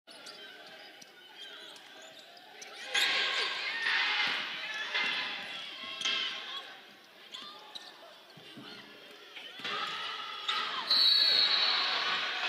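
Game sounds from a basketball court in a large hall: a ball bouncing on the hardwood and sneakers squeaking, with players and bench voices calling out. The sound grows louder about three seconds in and again near the end.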